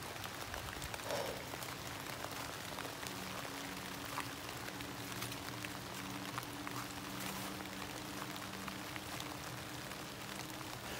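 Fine crackling and rustling of footsteps through dry leaf litter and brush, with many small scattered clicks. A faint steady low hum runs underneath from about a second in.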